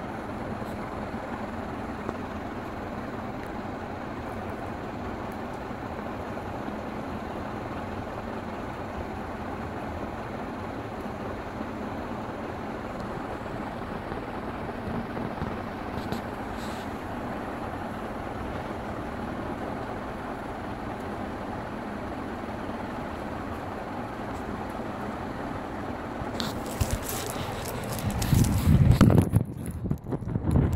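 Crompton Greaves High Breeze ceiling fan running, a steady even whir of the motor and moving air. Near the end, loud rustling and knocks as the phone filming it is moved.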